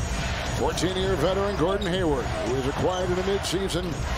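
Basketball TV broadcast sound: a play-by-play commentator talking over steady arena crowd noise, with a basketball being dribbled on the hardwood court.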